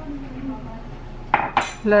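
Kitchen clatter of a ceramic cup and a wooden spatula against a ceramic mixing bowl as pineapple is tipped into carrot cake batter, with a short sharp clink about a second and a half in.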